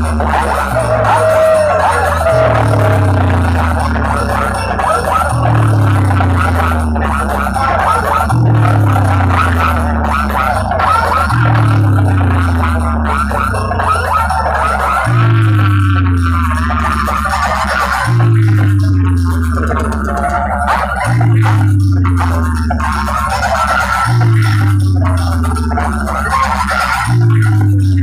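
Loud bass-heavy dance music played through a towering stacked DJ speaker-box rig. A deep bass note slides down in pitch and repeats about every three seconds, over a dense layer of higher sound.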